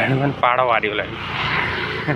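A man's voice briefly, then a vehicle passing on the road: a rushing sound that swells about a second in and fades away.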